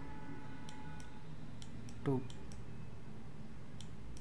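A few sharp, scattered clicks from the handwriting tool as words are drawn on screen, over a low steady hum.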